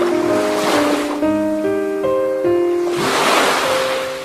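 Calm instrumental background music of sustained notes, with the sound of ocean waves washing in over it: one small swell in the first second and a bigger one about three seconds in.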